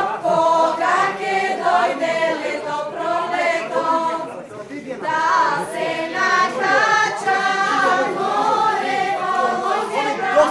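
A group of women singing a Macedonian folk song together, for St George's Day (Gjurgjovden). They sing in long held phrases, with a short break about four to five seconds in.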